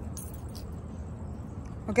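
Quiet street ambience: a steady low rumble with a faint, steady high whine and a few soft light clicks. A voice starts right at the end.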